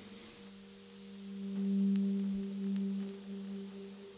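A single low sustained note from an instrument swells up, peaks about two seconds in and fades away, opening the band's next song.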